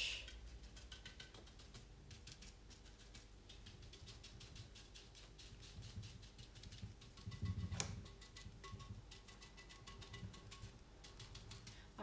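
Faint, rapid tapping of a paintbrush dabbing paint onto a fiberglass urn, over a low steady hum. A louder knock comes about eight seconds in.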